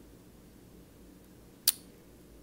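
A single sharp click about one and a half seconds in, over faint room hiss.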